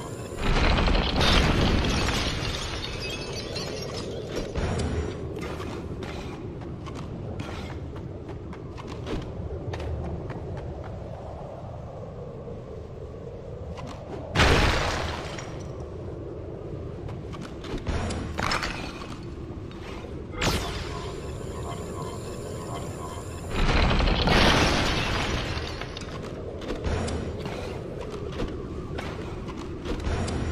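Cartoon soundtrack: background music under a string of loud crashes and booms. One comes right at the start, one about halfway, one a little later, and a longer one about four-fifths of the way in.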